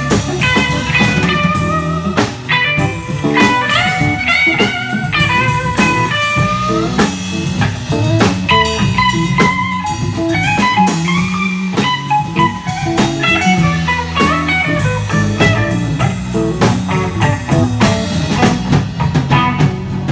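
Live blues band playing an instrumental passage: an electric guitar plays a lead line full of bent notes over bass guitar and a drum kit keeping a steady beat.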